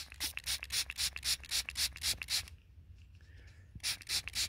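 Gloved fingertip rubbing soil off a small lead token held in the palm: quick scraping strokes, about four a second, that stop about two and a half seconds in and start again near the end.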